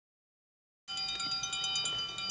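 Silence, then about a second in a chime-like chord starts: several steady tones held together, with light tinkling high notes over them.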